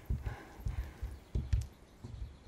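Footsteps on a wooden floor: several soft, low thuds at an uneven pace as two people walk.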